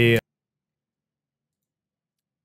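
Dead digital silence after a brief spoken word that cuts off abruptly at the very start.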